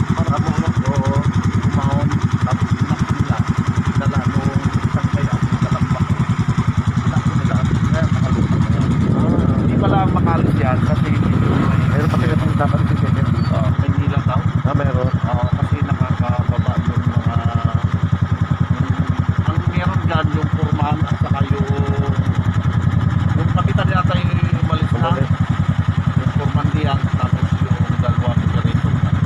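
Motorcycle engine idling steadily, with voices talking over it at times.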